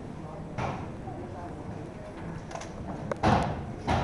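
Low murmur of voices in a room, broken by a few dull thumps, the loudest about three seconds in and another just before the end.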